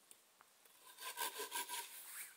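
Hand saw cutting through a thin log: after about a second of quiet, a short run of quick back-and-forth strokes.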